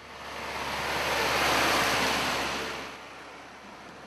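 A rushing noise with no pitch or rhythm, swelling over about a second and a half and fading away by about three and a half seconds in.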